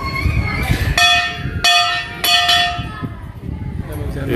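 Large hanging brass temple bells rung by hand: three clanging strikes about half a second apart, starting about a second in, each ringing on briefly, over crowd chatter.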